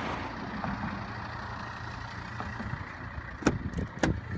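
Car engine idling close by with a steady low rumble. About three and a half seconds in, a sharp click as the car's door latch is opened.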